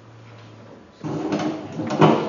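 Loud rustling and scraping close to the microphone, starting suddenly about a second in, with a few sharp knocks: handling noise from cloth and hands brushing the microphone.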